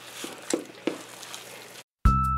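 A hand kneading tamale dough in an aluminium pot: soft squishing of the masa and manteca, with three faint clicks in the first second. The sound cuts off suddenly just before the end.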